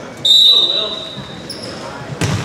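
Referee's whistle: one sharp, steady blast about a quarter second in, lasting under a second, signalling the server to serve. Voices in the gym carry on underneath, and a fainter high squeak comes near the end.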